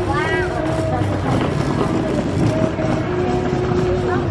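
Indistinct voices of several people talking in the background, over a steady low rumble.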